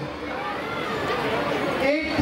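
Indistinct chatter of several people talking at once, with no clear voice on top.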